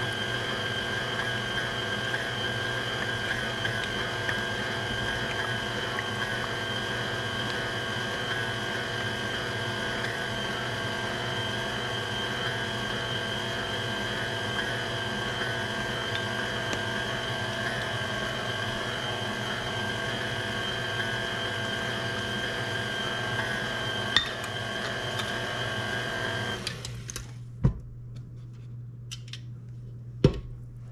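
KitchenAid Classic tilt-head stand mixer running steadily, its beater working through cream cheese batter. Its motor shuts off near the end, and a single sharp knock follows.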